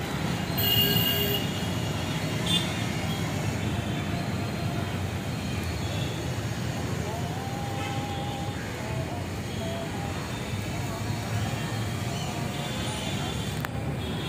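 Steady city street din: a continuous traffic rumble with faint voices and scattered brief tones mixed in.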